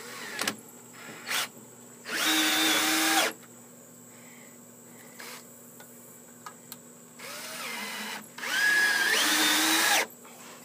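Ryobi cordless drill driving screws through a steel joist hanger into a wooden joist: two runs of about a second each, the second starting softly and rising in pitch as the trigger is squeezed. A couple of short knocks come in the first second and a half.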